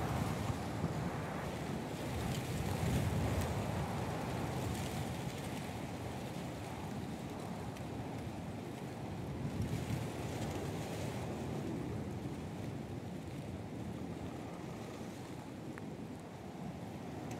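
Outdoor wind noise: a rushing hiss with a low rumble that swells about three seconds in and again around ten seconds.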